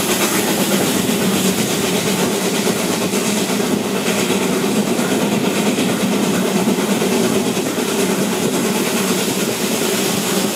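Narrow-gauge railway carriage running steadily along the line: a continuous rumble of wheels on rail, with air rushing past the open window.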